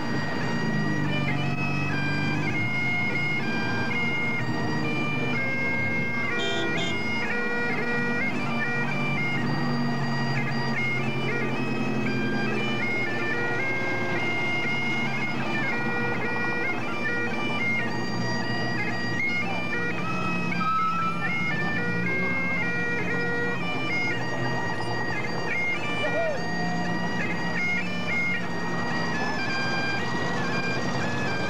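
Bagpipes playing a tune: a stepping melody over steady, unbroken drones.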